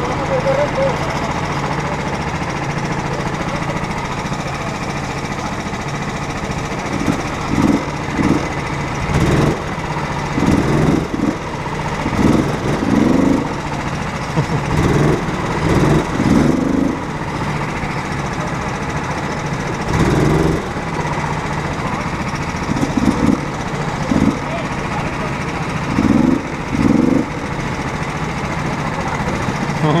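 Go-kart engines idling steadily, with short louder bursts every second or two from about seven seconds in.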